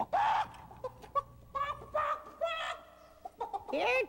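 Cartoon voice actors imitating chickens: one loud squawk at the start, then a run of short clucking calls from about one to three seconds in. These are hypnotized characters acting like chickens.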